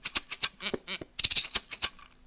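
Hand shakers played in a quick rhythm, about six sharp seed-rattling strokes a second, with a busier, louder flurry a little past the middle.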